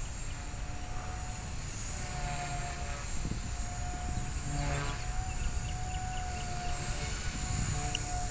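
Blade 180 CFX micro RC helicopter flying overhead at a distance: a steady whine from its 3S brushless motor and spinning rotors, with wind rumbling on the microphone.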